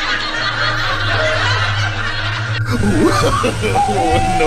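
People snickering and laughing over a steady low hum; about two and a half seconds in the sound cuts abruptly to excited voices.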